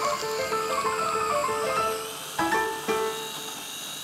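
Fast piano playing, quick runs of notes, with a countertop blender running underneath as it purées frozen black grapes.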